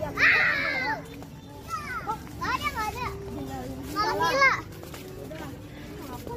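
Children's high-pitched shouts and squeals in three loud bursts: right at the start, about two and a half seconds in, and about four seconds in, over a steady low hum.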